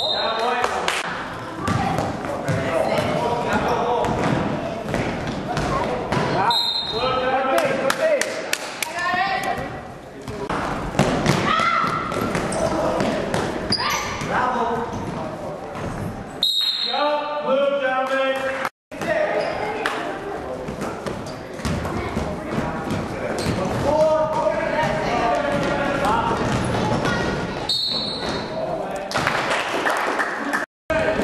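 Basketball bouncing on a hardwood gym floor during play, with players' and spectators' voices and shouts echoing in a large hall.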